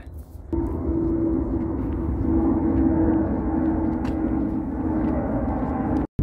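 Wall-mounted evaporative cooler's fan and motor running: a steady hum with a constant whine, starting abruptly about half a second in.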